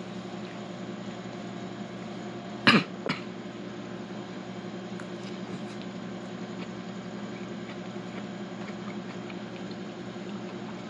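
A single short cough about three seconds in, over a steady low household hum.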